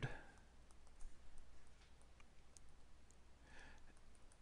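Faint, scattered clicks and taps of a pen stylus on a tablet as a word is handwritten, over a low steady electrical hum.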